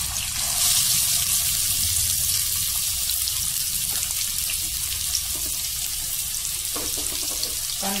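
Freshly added chopped red onion frying in hot oil with cumin seeds, a steady sizzling hiss.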